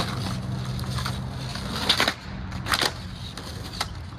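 Skateboard wheels rolling on concrete with a steady low rumble that fades about two seconds in, with sharp clacks of the board about two seconds in, again a moment later and near the end.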